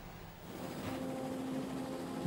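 Quiet, steady low drone: two held tones over a faint hiss, coming in about half a second in.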